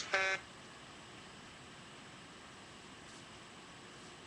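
Quiet room tone, a steady faint hiss, after a short pitched sound in the first third of a second.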